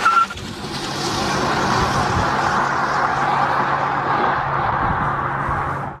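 Intro sound effect: a steady rushing noise with a low hum under it, which cuts off suddenly at the end.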